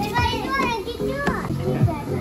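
A young child's high voice calling out briefly twice over steady background music.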